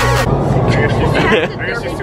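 Electronic background music cuts off just after the start, giving way to the steady low rush of an indoor skydiving vertical wind tunnel, with indistinct voices over it.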